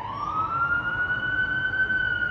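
Police siren sound effect: one wailing tone that rises fast at the start, then holds high and slowly sinks, over a low rumble.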